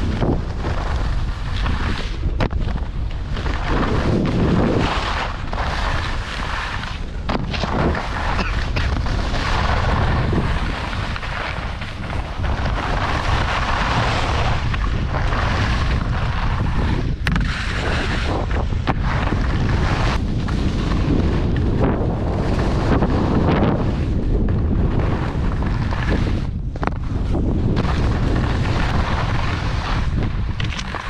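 Wind buffeting an action camera's microphone while skiing downhill, a steady loud rushing that rises and falls with speed. Skis scrape and chatter on packed snow underneath it.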